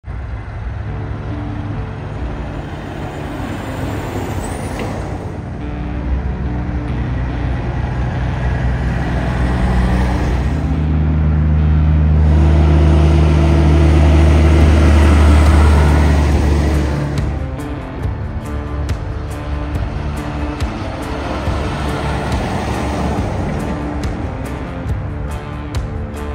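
A heavy semi-truck's diesel engine grows louder as it approaches, peaking about halfway through and then easing off, with music playing along with it.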